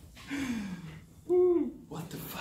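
Wordless human vocal sounds: a low voice gliding down for about half a second, then a short, louder and higher vocal note just past the middle.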